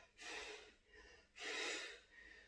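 A man's heavy breathing during crunches: two forceful, rushing breaths about a second and a half apart.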